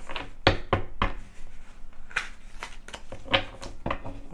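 Tarot cards being handled and tapped down on a wooden table: a run of irregular sharp clicks and knocks, the loudest about half a second in and again just past three seconds.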